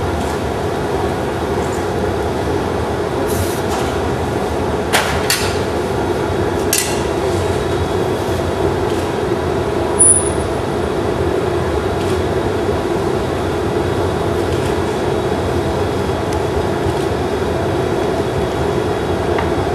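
Steady roar of a glassblowing hot shop's burners and furnace. A few sharp clicks come about five to seven seconds in, and a brief high-pitched ping about ten seconds in.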